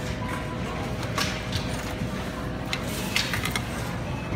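A few light metallic clinks of a keyring, with the key held in a key-copying kiosk's reader, over a steady hum and faint background music.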